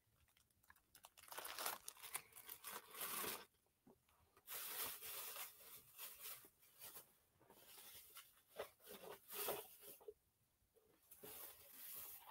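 Faint, irregular rustling and crinkling in short bursts, as of something being handled close to the microphone.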